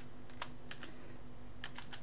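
Computer keyboard typing: a few separate keystroke clicks spaced unevenly, then a quick run of three near the end.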